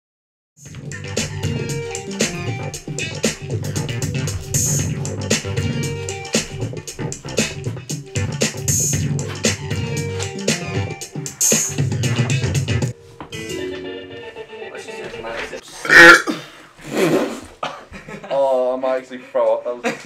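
Electronic keyboard playing a preset dance beat with a heavy bass, which stops about two-thirds of the way through. Then come two loud short shouts or laughs and a few short pitched sounds.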